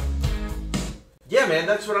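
Playback of a country track with guitar from the studio monitors, stopping about a second in; a man then starts talking.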